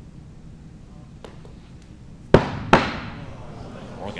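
Two big axes striking wooden throwing-target boards: two sharp thuds about a third of a second apart, the first the louder, each with a short ringing tail.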